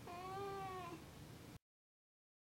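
Black-and-white domestic cat meowing once: a single drawn-out meow about a second long that drops in pitch at the end.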